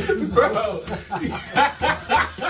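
A group of young men laughing together, breaking into a run of short, repeated bursts of laughter in the second half.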